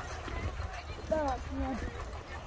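Faint voices of people walking by, over a steady low rumble, with soft footsteps on a packed-snow path.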